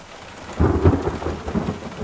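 A low roll of thunder over steady rain, starting about half a second in and fading away.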